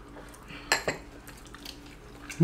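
Chopsticks clinking against a small sauce bowl at the table, one sharp clink a little under a second in, followed closely by a fainter one.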